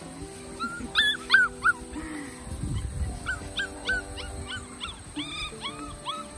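Welsh Springer Spaniel puppies yipping and whimpering: a string of short, high-pitched yips, bunched about a second in and again from about three seconds on, over soft background music.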